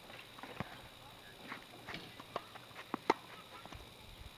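Tennis ball strikes and bounces during a rally on an outdoor hard court: a handful of sharp, single knocks, with the loudest about three seconds in.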